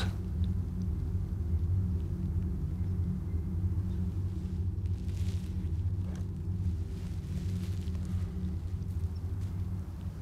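A steady low rumbling drone, typical of a horror film's underscore, with faint rustles about five and six seconds in.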